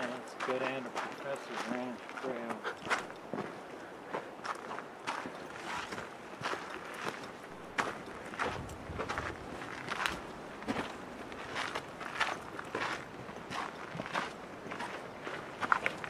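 Footsteps of a hiker walking on a dirt trail strewn with pine needles and grit, at a steady walking pace. A few faint words are spoken at the start.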